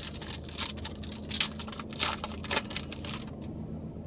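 Topps Chrome trading cards being flipped and slid against one another in the hand, a quick uneven run of light clicks and flicks that stops about three and a half seconds in. A steady low hum runs underneath.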